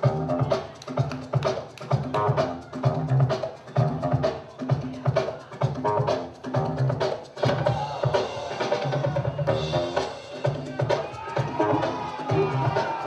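Breakbeat music played by the battle DJ: a heavy kick-and-snare drum loop with a bass line and melody repeating steadily.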